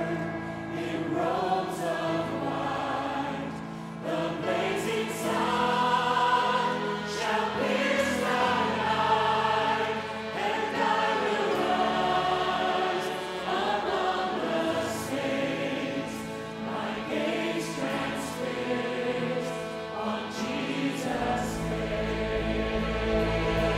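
Congregational worship song: a large choir and lead singers singing together over orchestral accompaniment, with sustained low notes underneath the melody.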